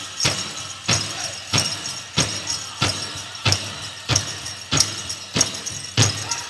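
Powwow drum group beating a large shared drum in a steady beat, about three strokes every two seconds, with the dancers' bells jingling over it.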